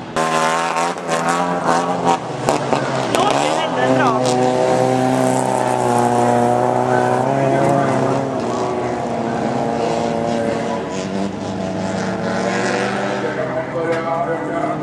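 Folkrace car engines racing on a dirt track, revving hard through gear changes in the first few seconds. A sharp rise and fall in revs comes about four seconds in, then the engines run at steady high revs, dropping a little about eight seconds in.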